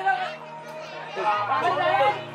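Background pop song: a singing voice over held bass notes.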